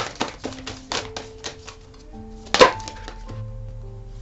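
Soft background music of long held tones, shifting pitch every second or so, under irregular sharp taps and clicks, the loudest about two and a half seconds in.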